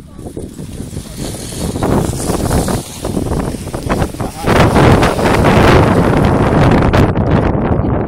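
Wind buffeting the microphone, a rough noisy rumble that gets much louder about halfway through, with people talking underneath.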